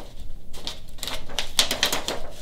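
Hands rummaging through things in a low shelf, a quick run of small clicks and rustles that gets busier in the second half.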